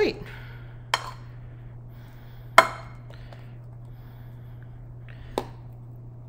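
A spoon knocking against a plate three times while spreading whipped cream, the loudest knock about two and a half seconds in. A steady low hum runs underneath.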